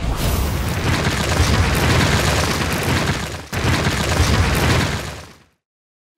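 A loud explosion-like sound effect for a logo intro: dense noise with a heavy low end, briefly breaking off about three and a half seconds in, then fading out near the end.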